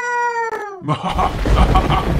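A long, high-pitched wail, sliding slowly down in pitch, cuts off under a second in. About a second in, a rumbling thunder-crash sound effect starts and keeps going.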